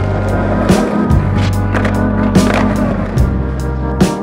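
Skateboard wheels rolling on asphalt with several sharp knocks of the board. Background music with sustained organ and bass notes plays over it.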